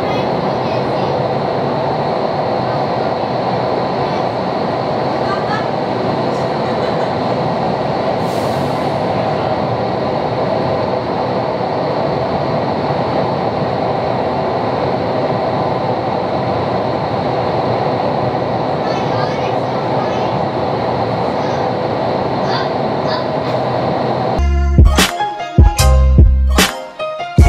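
Steady roar of rushing air in an indoor skydiving wind tunnel's flight chamber, with a steady hum running through it. Music with a beat cuts in near the end.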